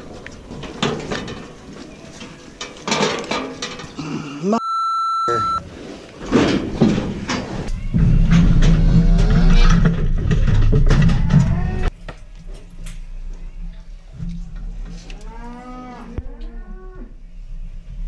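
Cattle being worked in a steel head chute: metal clattering and handling knocks, a short electronic beep about five seconds in, a loud low rumble in the middle, and cattle mooing near the end.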